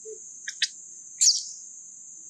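Steady high-pitched drone of insects, with two short high chirps about half a second in and a louder, quick falling squeak just after one second.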